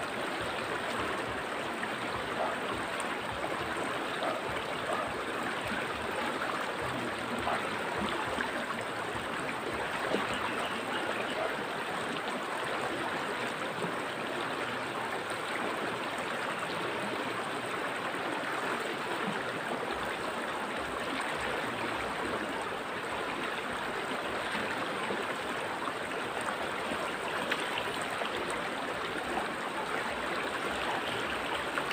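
Steady rushing and gurgling of a river flowing over and around rocks.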